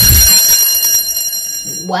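A school bell ringing loudly and steadily for nearly two seconds, then cutting off; it marks the end of the class period. A low thump comes with its onset.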